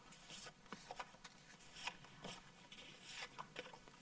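Faint rustling and light scattered ticks of small paper cards being handled and counted by hand.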